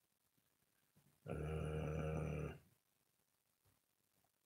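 A man's drawn-out "uhh" hesitation, held at one steady low pitch for just over a second, in faint room tone.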